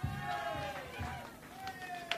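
A person's voice shouting a drawn-out call that falls in pitch, then a second shorter call near the end, with a few sharp clicks, in a live concert recording between songs.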